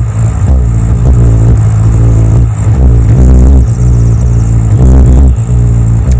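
Hummingbird wings beating so fast they make a loud, low buzzing hum, swelling and fading every half second or so as the bird hovers and darts.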